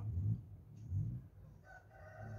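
A rooster crowing faintly in the background: one long, slightly falling call that begins near the end.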